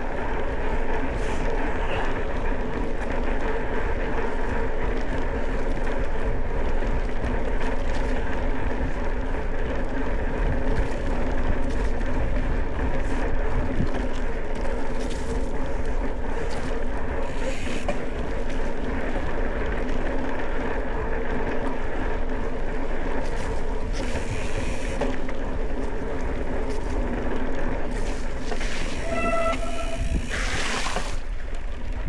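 Mountain bike riding along a dirt track: a steady rumble of tyres rolling over packed dirt and sand, with wind on the microphone. A brief high tone sounds near the end.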